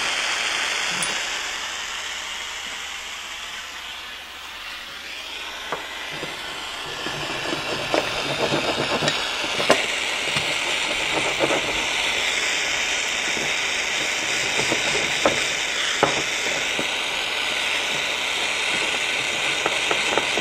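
Aero acetylene soldering torch burning with a steady hiss from its blue flame as it heats a copper soldering iron tip. From about seven seconds in there are scattered crackles and sizzling as the hot tip works on a sal ammoniac block during tinning.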